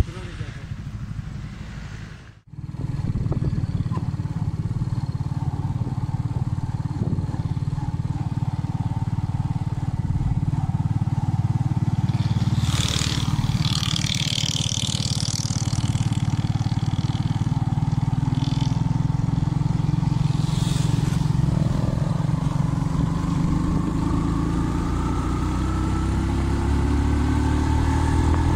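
Small motorcycle engine running steadily while riding, its pitch climbing over the last few seconds as it speeds up.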